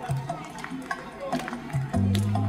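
Hand clapping in a steady beat, about three claps a second, with voices under it.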